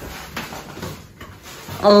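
Faint clicks and rustling of someone at a front door, handling its lock and then turning away from it, with a voice starting near the end.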